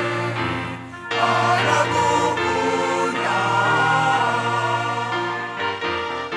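Large mixed choir of men's and women's voices singing a sacred gospel piece in held chords, swelling louder about a second in.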